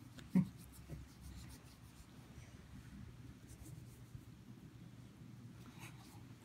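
Hands rubbing a dog's fur as it lies on carpet: a faint, scratchy rustling, with one brief louder sound about half a second in.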